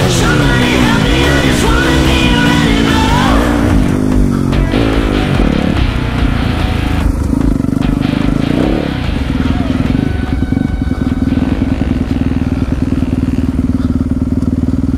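Dirt bike engine running under load on a motocross track, its pitch rising and falling with the throttle and gear changes, heard close from the rider's helmet. Rock music plays over the first few seconds and then fades out.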